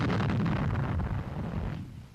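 The rolling rumble of a heavy gun shot, fading away steadily over about two seconds.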